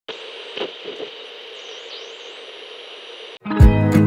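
Television static: an even hiss with a faint wavering high whistle and a couple of soft knocks in the first second, cutting off suddenly after about three and a half seconds. Music then starts at once, a strong kick-drum beat with guitar.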